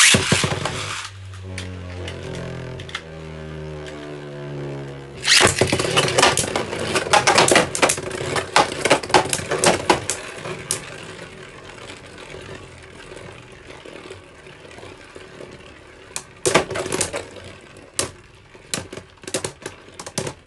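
Two Beyblade Burst tops, Super Hyperion and Union Achilles, are ripcord-launched into a plastic stadium with a sharp zip. They spin with a humming tone for a few seconds. From about five seconds in they clash in a dense run of rapid clicks and knocks, then spin more quietly, with further bursts of collisions near the end.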